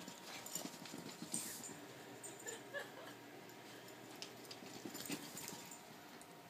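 Pembroke Welsh Corgi puppy hopping and pouncing on carpet: a scatter of quick, soft paw thumps and taps, several close together.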